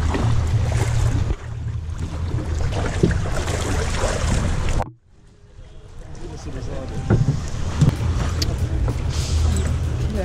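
Longtail boat engine running with a steady low hum. The sound cuts out suddenly about halfway through, then fades back in.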